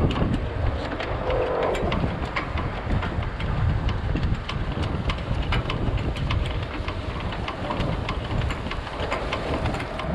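Mesh roll tarp being rolled back over a truck's load of junk, a steady mechanical rumble with many small clicks and rattles as it winds up.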